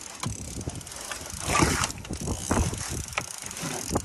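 A trolling reel being cranked and gear handled in a boat while a fish is brought in: irregular clicks and knocks with rustling, and a louder rush about one and a half seconds in.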